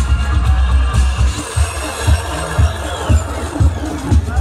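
House music played loud through an outdoor DJ sound system, driven by a steady bass kick about twice a second.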